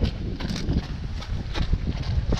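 Running footsteps on wet asphalt as a runner in running shoes passes close by: a few irregular footfalls over a steady low rumble.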